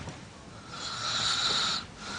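A man asleep on a sofa snoring: one long, hissing snore of about a second, starting just under a second in.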